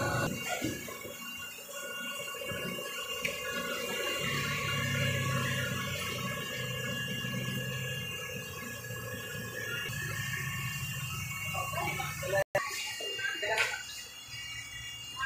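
Fish-market background: a steady low hum with faint voices, the voices rising toward the end.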